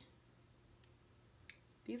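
Near silence with faint room tone, broken by two small faint clicks past the middle. A woman's voice starts right at the end.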